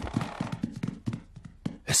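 Cartoon footstep sound effect: a quick run of light taps as two characters walk up the stairs, getting fainter toward the end.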